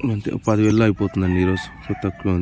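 A man's voice, loud and close, in several short phrases amid a crowd.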